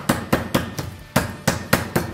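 Meat mallet pounding raw chicken breast flat on a wooden cutting board: quick, repeated strikes, about four a second, with a brief pause about a second in.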